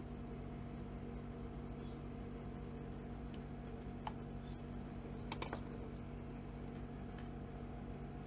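Steady low hum with a few small clicks and taps as craft supplies are handled on the work mat, including a quick cluster of three clicks about five seconds in.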